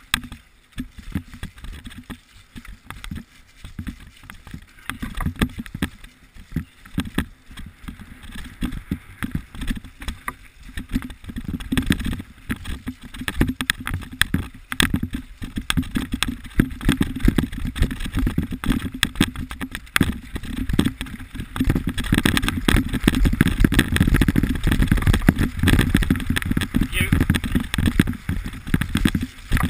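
Mountain bike riding fast down a rough, wet, muddy track: a constant rattle and clatter of the bike over bumps, with wind rumbling on the microphone and tyres running through mud and puddles. It grows louder from about halfway, as the speed picks up.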